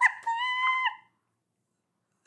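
A woman's high-pitched, held squeal of laughter lasting about a second, cut off abruptly.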